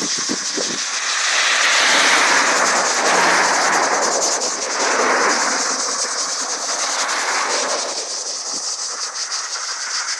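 Cars passing on a road close by, the tyre and engine noise swelling to a peak about two to three seconds in and again about five seconds in, then easing off.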